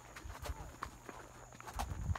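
Horse walking, its hooves clopping faintly and unevenly.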